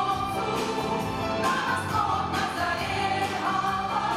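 A mixed ensemble of men and women singing a song together in chorus through handheld stage microphones.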